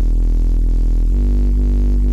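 Heavily distorted sub bass synth made from two triangle oscillators, the second an octave up, through wave-shaper and Camel Crusher distortion. It holds a low note that steps to another note about a second in, with a reverb that pulses to widen the stereo.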